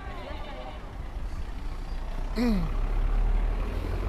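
City street traffic, a low rumble of passing vehicles that grows louder about two seconds in, with a brief falling voice just after.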